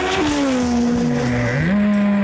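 Motorcycle engines running at high revs. One held engine note drops in pitch as it passes near the start, and a second note dips and then climbs again about a second and a half in.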